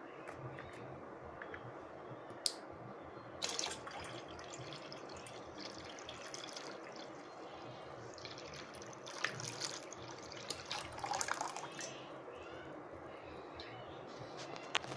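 Water from a small pump-fed pipe pouring into a stainless steel bowl already holding water, with light splashing and dripping. The flow is switched on by the IR sensor detecting a cup held in front of it.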